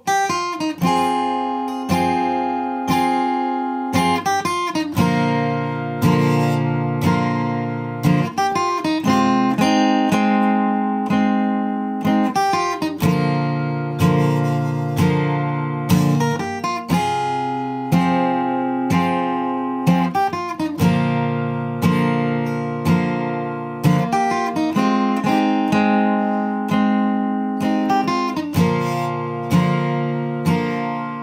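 Steel-string acoustic guitar, capoed at the third fret, playing a slow chord line: repeated picked chord hits on D minor, G, F and G, about two a second, with short three-note runs between the chords.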